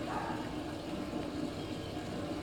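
Steady low background hum and hiss of room tone, with no distinct event.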